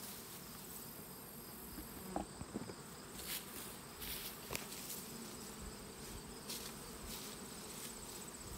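Faint hum of honey bees flying around open hives, over a steady high insect trill, with a few light knocks and rustles.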